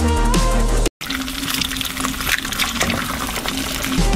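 Electronic music with heavy bass that cuts out suddenly about a second in, followed by a steady sizzle of eggs frying in a pan under a glass lid.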